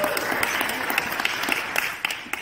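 Congregation applauding: many people clapping at once, the applause beginning to fade near the end.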